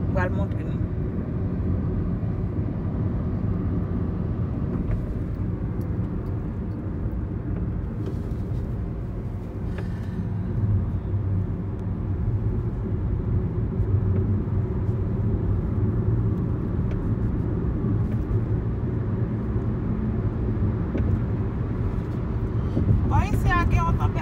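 Steady low road rumble of a car cruising on a highway, engine and tyre noise heard from inside the cabin.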